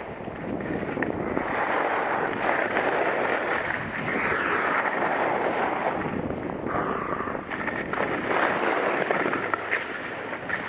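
Skis running fast down a groomed piste: a continuous rushing scrape of ski edges on snow, rising and falling with the turns. Wind rushes on the microphone throughout.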